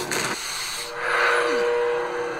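TV episode soundtrack in a dark, suspenseful scene: a hiss, then, from just under a second in, a held drone of two steady tones with a short sliding-down note.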